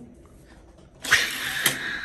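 A die-cast Hot Wheels toy car rolling fast along orange plastic track: a sudden loud rolling rush about a second in, with a sharp click partway through.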